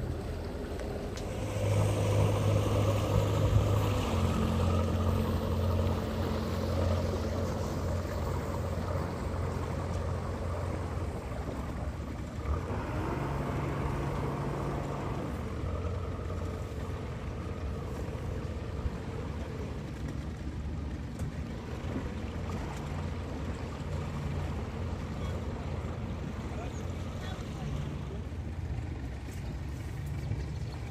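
Boat engine running steadily at low cruising speed, with a low even hum that is louder for a couple of seconds near the start.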